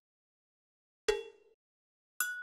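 A single struck, ringing ding about a second in, after silence, with a few clear tones that fade out within half a second.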